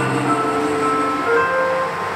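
Electronic keyboard holding slow, sustained chords with no singing, the instrumental ending of a soft pop ballad.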